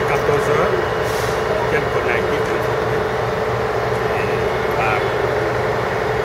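Steady drone of a running vehicle engine, with indistinct voices talking in the background.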